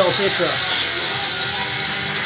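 Western diamondback rattlesnake buzzing its rattle, a steady high hiss that breaks into a rapid pulsing about a second and a half in, over background music.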